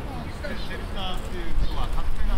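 Indistinct chatter of several people talking nearby, over a low rumble that swells near the end.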